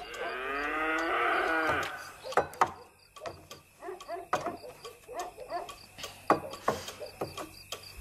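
A cow moos once, a long call of about two seconds that drops in pitch at its end. Scattered light knocks and clinks follow.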